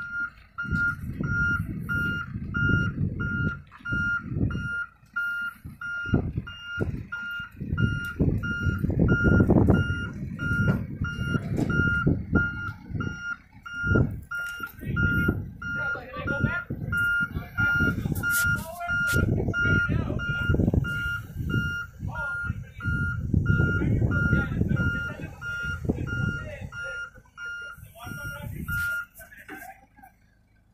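Backhoe loader's reversing alarm beeping steadily as the machine backs up, over a loud, uneven low rumble. The beeping stops near the end.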